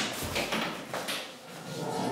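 An apartment front door being opened and swung wide, with the clatter of its handle and latch and footsteps going out through it.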